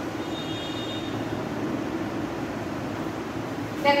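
Steady low background rumble with no clear source, and a faint high-pitched tone in the first second. A woman's voice cuts in at the very end.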